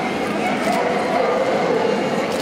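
Dogs barking and yipping amid the steady chatter of people.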